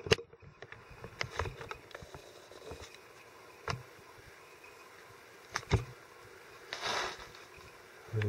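Quiet room with a few scattered light clicks and a short rustle near the end: handling noise from a handheld camera being moved.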